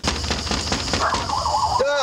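Soundtrack of a cheap, grainy-looking film: a steady low hum with hiss. A wavering sound comes about a second in, and a short voice-like call rises and falls near the end.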